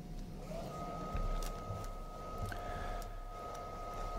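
TIG welding arc on a steel canister seam, a faint steady high-pitched whine with a lower tone beneath it that settles in about half a second in, over a low hum and a few faint ticks.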